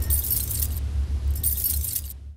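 Sound-effect chains rattling and clinking, in two bursts about a second apart, over a deep steady rumble.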